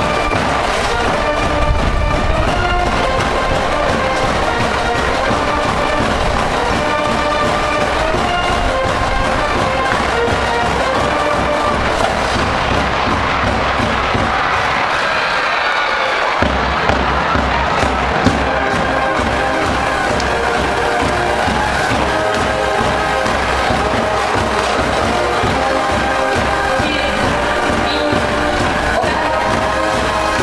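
A school cheering band, brass-led, plays a baseball fight tune while the cheering section shouts along. Wind rumbles on the microphone, easing off for a couple of seconds midway.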